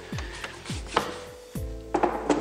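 Pointed wax brush scrubbing clear wax into a chalk-painted wooden cabinet, several short back-and-forth strokes. Soft background music.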